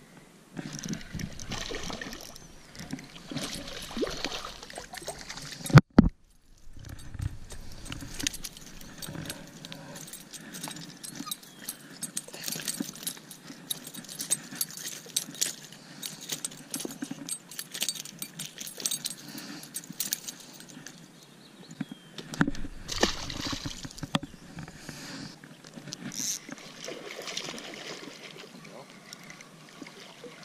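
Handling noise from light spinning tackle on a boat: a spinning reel being cranked and rod and gear clicking and knocking, with one sharp loud knock about six seconds in. A small fish is swung out of the water on the line partway through.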